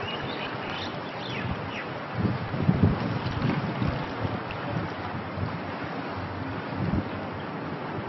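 Wind buffeting the microphone in uneven gusts, strongest two to three seconds in. A few faint high chirps come in the first two seconds.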